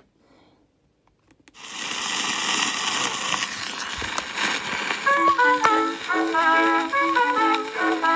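Faint at first, then about a second and a half in the steady hiss and crackle of an old 1913 acoustic-era disc recording starts up; from about five seconds in, the orchestral introduction begins with short, bouncy pitched notes over the hiss.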